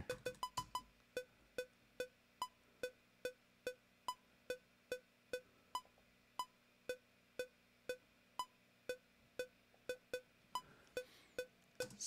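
Cubase's metronome click during playback at 144 BPM: a steady series of short pitched clicks, about two and a half a second, slowing slightly towards the end.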